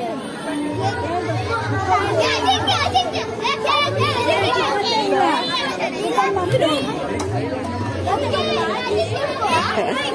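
Many children talking and shouting at once during a game, with music playing in the background.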